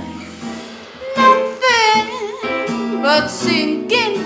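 A girl singing a melody with wavering vibrato over soft instrumental accompaniment, the voice coming in about a second in.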